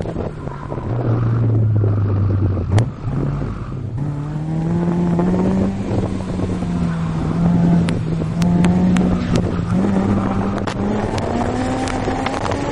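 Honda S2000's four-cylinder engine pulling hard on track with the top down. The note holds low, breaks off at a sharp click about three seconds in, then climbs in pitch and stays high, rising again near the end, over steady road and wind noise.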